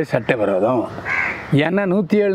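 A man speaking Tamil, talking continuously.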